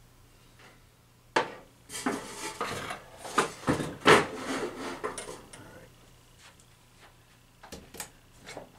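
Sheet-metal fluorescent light fixture being slid and knocked about on a plywood workbench: a run of scrapes and sharp knocks, loudest about four seconds in, then quieter handling.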